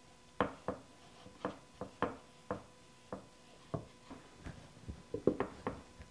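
Light, irregular clicks and taps, about two or three a second, from hands working a soft clay mug with a small damp sponge on a wooden board, over a faint steady hum.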